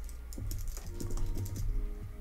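Typing on a computer keyboard: a few scattered key clicks.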